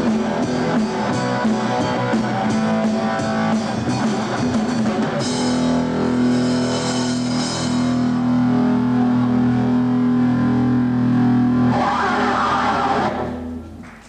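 Live rock trio of electric guitar, bass guitar and drum kit playing. About five seconds in the drum strokes stop and a chord is held, ringing on. A noisy swell comes near the end before the sound dies away, the close of a song.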